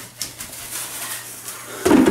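Faint handling and rustling sounds in a quiet room over a steady low hum, with a few light clicks; a man's voice, a laugh, starts near the end.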